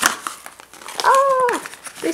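A small cardboard box being pulled open by hand: a sharp tear right at the start, then cardboard rustling and flaps scraping. About a second in comes a short, high-pitched vocal sound, rising and then falling off, lasting about half a second, louder than the cardboard.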